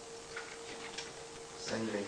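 A few faint scattered clicks over a steady hum, then a man's voice begins speaking through the podium microphone near the end.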